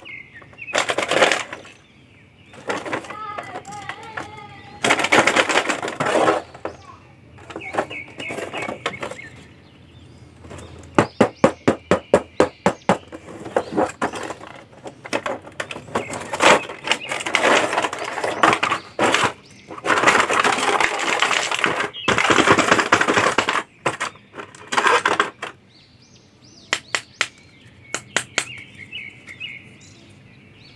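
Cardboard toy box and its plastic window and blister tray being handled and opened: bursts of rustling and crinkling plastic, with runs of rapid sharp clicks.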